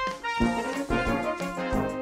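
Brass band music played back as a multitrack mix of separately recorded parts, panned across the stereo field and roughly balanced: cornets and lower brass playing together in full ensemble.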